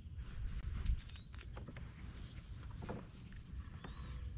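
Faint clicks and metallic jingling of fishing tackle being handled, a dangling topwater lure with treble hooks on a spinning rod, over a low rumble.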